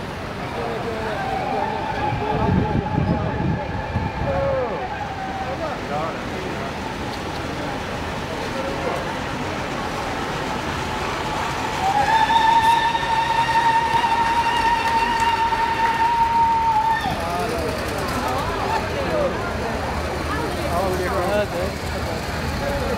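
A siren on the procession's police escort sounds twice: faint in the first few seconds, then loud for about five seconds near the middle. Each time it rises to one steady pitch, holds it and falls away. Crowd voices and the engines of the passing vehicles run underneath.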